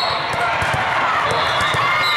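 Steady din of a large indoor hall during volleyball play: many voices talking and calling over one another, with frequent short thuds of volleyballs being hit and bouncing on the surrounding courts.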